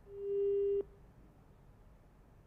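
A single steady electronic beep, swelling in quickly, holding for under a second and then cutting off abruptly.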